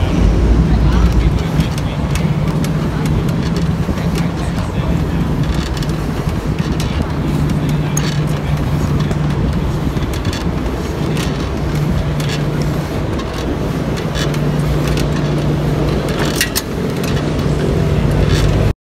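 A steady low engine drone, like a motor vehicle running, fading in and out, with a few sharp clicks near the end.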